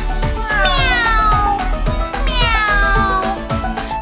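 Two long meows, each falling in pitch, over an upbeat children's song backing track with a steady beat.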